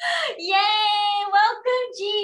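A woman's high-pitched, sing-song voice drawing out long held notes, a playful wordless vocalisation rather than ordinary speech.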